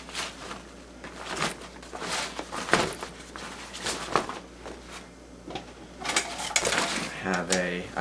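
Gear being rummaged through and pulled out of the main compartment of a rubberized canvas backpack: rustling, scraping and scattered knocks, the loudest a sharp knock about three seconds in.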